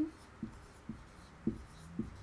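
Marker pen writing on a whiteboard: a few short strokes about half a second apart.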